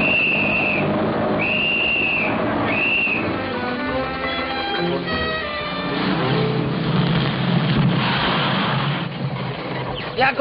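Three shrill blasts on a small hand whistle in the first three seconds, each a slightly arched tone, the middle one the longest. A short passage of film music follows, then the steady low running of an old truck's engine.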